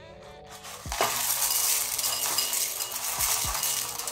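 Dry cornflakes poured from a plastic container into a ceramic bowl: a dense, crackly rattle of flakes landing that starts about a second in and keeps going.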